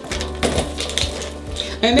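Background music, with a few clicks and rattles from a thick plastic bag being handled.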